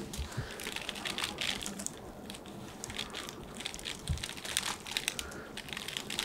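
Faint crinkling and rustling with many small scattered clicks as exam-gloved hands grip and work at a person's nose, the head resting on a paper-covered headrest; one soft low thump about four seconds in.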